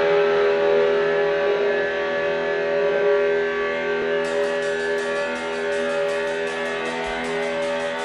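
Electric guitars holding sustained, ringing chords as a live rock band builds up a song. About four seconds in, light, even cymbal taps from the drum kit join in.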